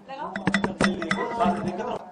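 Several sharp clicks and clinks in quick succession, bunched in the first second, over murmuring voices in a room.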